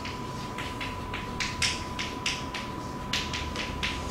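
Chalk writing on a blackboard: a rapid, irregular series of short taps and scratches, about five a second, as a line of symbols is written. A faint steady high tone runs underneath.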